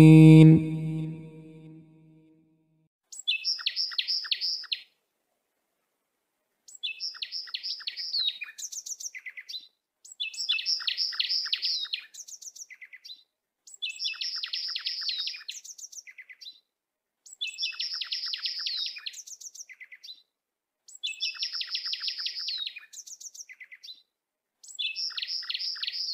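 Bird song: a short phrase of high, rapid chirps and trills, repeated seven times at even spacing with dead silence between, the same phrase each time. In the first second or two the last held note of a chanted recitation fades out.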